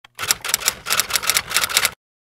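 Typewriter keystroke sound effect: a fast run of sharp clacking strokes, about six a second, that cuts off suddenly just before the end.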